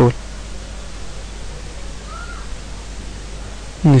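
Steady background hiss with a low hum underneath, and a faint short tone that rises and falls about two seconds in.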